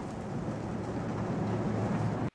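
A van driving along a highway, heard from inside the cab: a steady rumble of engine and road noise that swells slightly.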